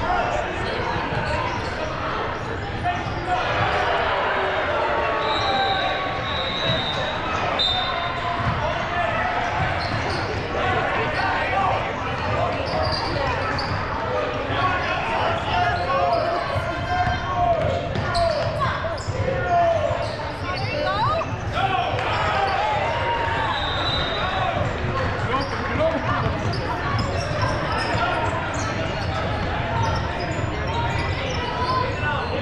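Basketball dribbled on a hardwood gym court, with a few short high sneaker squeaks and indistinct voices of players and spectators echoing in the large hall.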